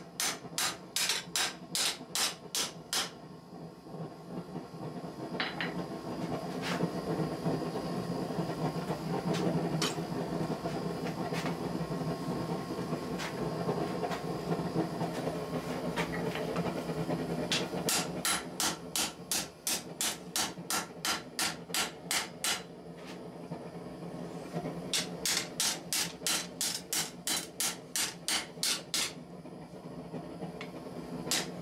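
Hand hammer striking a hot 5160 leaf spring on an anvil to forge it flat, about three blows a second, in runs at the start, after the middle and again near the end. In between, for about fifteen seconds, a steady rushing hiss from the forge while the steel reheats, with a few single clinks.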